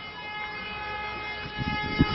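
A steady, high warning tone holding one pitch, rich in overtones, with a low buffeting coming in near the end.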